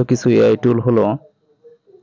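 Speech only: a voice reading aloud for about the first second, then a short pause.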